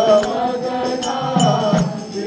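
Devotional Hindu bhajan to Ganesh: a sung melody over drum beats and jingling percussion.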